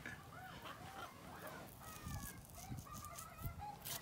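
Faint, repeated short bird calls, several a second, with a sharp click near the end.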